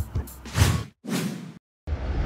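Two whoosh sound effects of an animated graphics transition over background music, the first about half a second in and the second about a second in, followed by a moment of dead silence just before the end.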